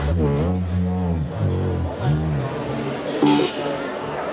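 Electronic music played live through amplifiers: low pitched tones that bend up and down in pitch start abruptly, with a short noisy burst about three seconds in.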